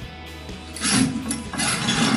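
Creaking and scraping noises, in several rough bursts starting about a second in, over background music.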